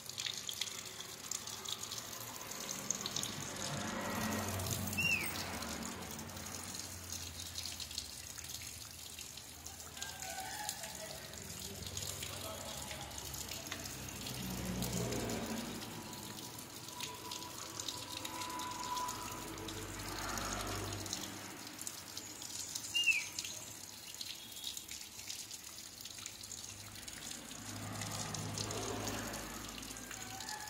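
Water trickling and dripping down the wires of a birdcage, with two short, high, falling chirps, one about five seconds in and a louder one later.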